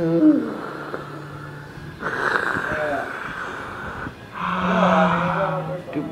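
A man making drawn-out wordless vocal sounds: a falling glide at the start, then long held stretches about two seconds in and again near the end.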